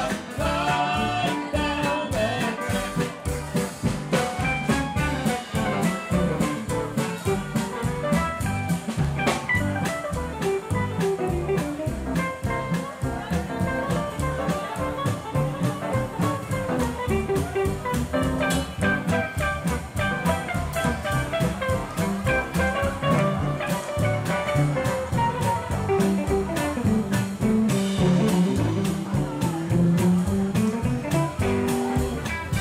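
Western swing band playing an instrumental break without vocals: a steady upright double bass and drum beat under strummed acoustic guitars, with a sliding lead line from a pedal steel guitar.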